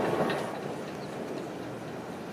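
Polybahn funicular car's wheels rumbling and clicking along the track as it passes, fading within the first half second to a faint steady running noise.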